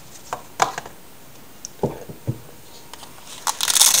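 Cardboard knife boxes and pouches being handled: a few light clicks and knocks, two dull thumps around the middle, then a burst of rustling and crinkling near the end.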